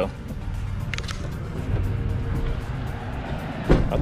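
Background music with a quick, steady high ticking beat over a low steady rumble.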